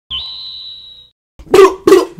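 Intro sound effect: a soft thump, then a steady high beep-like tone that holds for about a second and stops. After a short gap a man gives two short, loud vocal shouts near the end.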